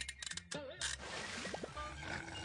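Animated TV-bumper soundtrack: music mixed with cartoonish voice-like noises that slide up and down in pitch, over a steady low rumble.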